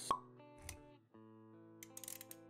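Intro jingle for an animated title: soft sustained music notes with a short, sharp pop sound effect just after the start, then a soft low thump shortly after, and the music breaking off briefly before carrying on.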